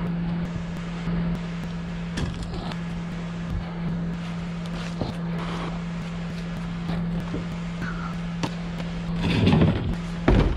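Scattered knocks and scrapes of wooden panels and boat-interior debris being handled and thrown, over a steady low hum. Near the end comes a louder stretch of scraping and rustling as a large piece is lifted.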